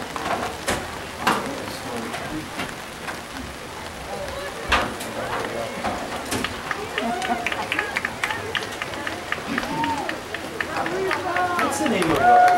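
Indistinct chatter from nearby people over a steady outdoor background, with a few sharp knocks early on and a patter of small ticks in the second half.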